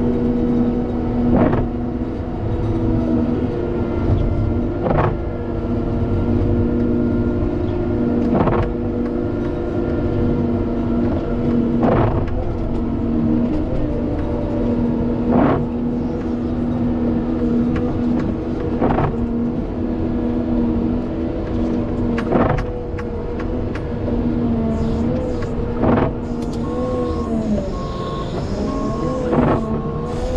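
Caterpillar 930M wheel loader's diesel engine running steadily under load while pushing snow, with a sharp click recurring about every three and a half seconds. In the last few seconds the engine pitch wavers and a reverse alarm starts beeping as the loader changes direction.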